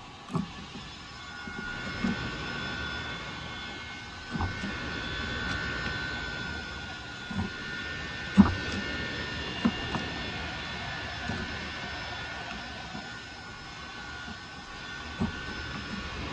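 Chisel pushed by hand through wood, paring out a notch, with about seven sharp cracks and knocks as chips break away; the loudest comes a little past the middle. Behind it a steady high-pitched mechanical whine builds over the first few seconds and fades near the end.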